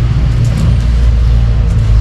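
A loud, steady low rumble with no speech.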